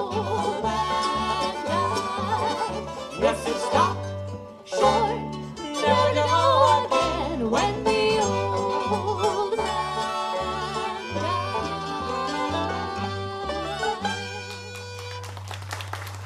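Bluegrass string band playing the closing bars of an old-time song: five-string banjo, fiddle, mandolin and upright bass, with a man's voice singing over them. The tune settles onto a long held final chord about fourteen seconds in.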